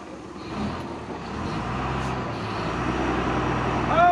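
A motor vehicle's engine running as a low rumble that grows louder over the first two seconds and then holds steady.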